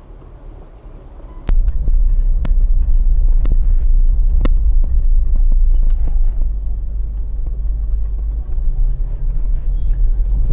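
Low rumble of a car's engine and road noise heard from inside the car while driving slowly. It jumps suddenly louder about a second and a half in, and sharp clicks come about once a second for the next few seconds.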